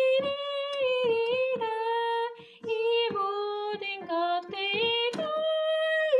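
A woman singing a Korean Catholic hymn in held notes, stepping between pitches, with a short breath about two and a half seconds in. A digital piano accompanies her.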